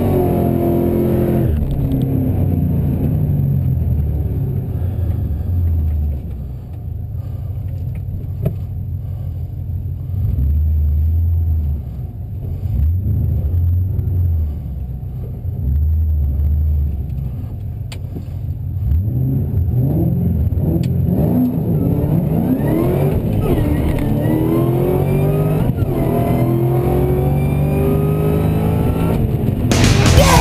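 Supercharged 5.4-litre V8 of a modified 2007 Shelby GT500, heard from inside the cabin: high revs that cut off about a second and a half in, then a low, uneven idle that swells and drops several times, and from about two-thirds of the way through, hard acceleration climbing in pitch again and again through the gears.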